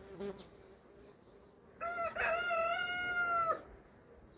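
A rooster crows once: a single held call of about a second and a half, starting a couple of seconds in and ending abruptly. Beneath it is the faint hum of honeybees flying over an open hive.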